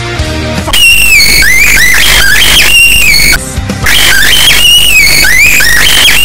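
Metal band music with guitar and bass, cut under a second in by a cockatiel screeching: loud, high whistled screams that slide up and down in pitch, in two runs with a short break between them, over a low backing.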